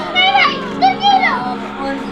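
A young person's voice giving a few short, high-pitched cries that rise and fall, over steady background music.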